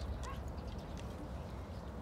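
A dog's claws clicking lightly a few times on wooden deck boards as it shifts about, over a steady low rumble.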